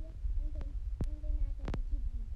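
A child humming low, drawn-out notes over a steady low rumble, with sharp clicks about a second in and again near the end.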